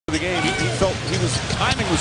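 Basketball game broadcast: a basketball bouncing on the hardwood court, with a commentator's voice and arena crowd noise underneath.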